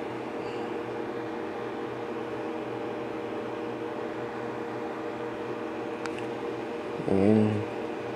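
Steady room hum with a few fixed low tones. A faint click comes about six seconds in, and a brief murmur of a man's voice near the end.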